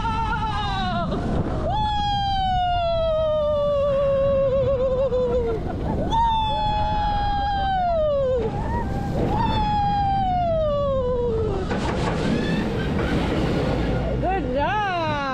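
A rider's long 'woo' cries, three in a row, each held for a few seconds and sliding down in pitch, over the steady rush and rumble of the moving roller coaster.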